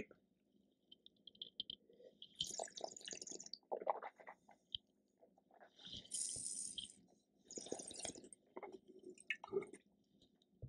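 Faint wine tasting in the mouth: air sucked through a mouthful of wine in three short hissy slurps, with wet mouth noises between, then a few light knocks near the end.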